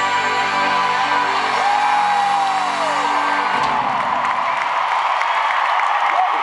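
Live rock band holding a final chord, with one long note swelling and then sliding down. The band cuts off a little over halfway through, leaving an arena crowd cheering and whooping.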